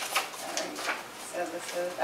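Quiet, indistinct talk in a small meeting room, with a couple of short knocks from handling something on the table near the start.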